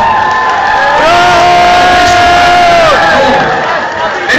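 A crowd of people cheering and shouting. One voice holds a long, steady yell from about a second in until about three seconds.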